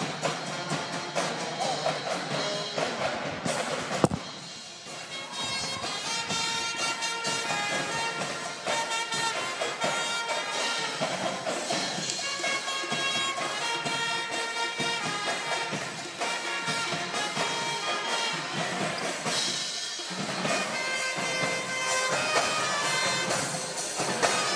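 School pep band playing in a gym: drums at first, then a sharp knock about four seconds in, and from about five seconds the band plays a tune of held brass and wind notes.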